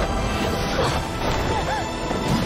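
Dramatic soundtrack music layered with fight-scene sound effects of crashing hits.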